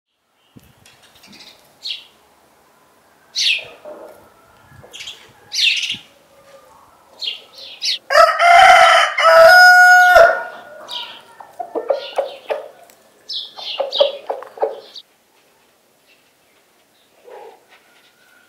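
A farmyard rooster crowing once, loud, about eight seconds in and lasting about two seconds, with hens clucking after it. Short, high bird chirps come before the crow.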